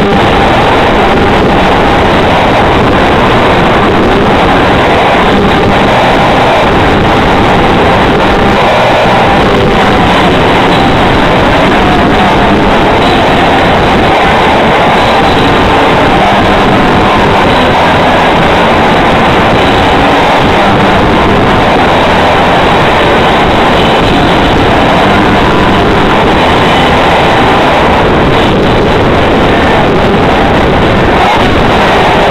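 A band playing live at full volume: drums, cymbals and electric guitar, recorded close on an overloaded microphone so that everything merges into a dense, distorted, steady wash.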